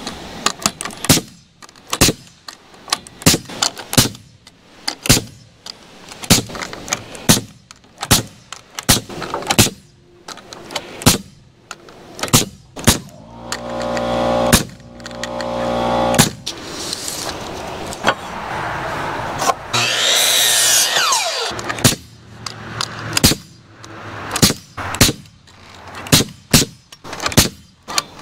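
Pneumatic coil nailer firing nails into wooden roof purlins: a string of sharp shots, roughly one a second. A steady hum comes in for a few seconds in the middle.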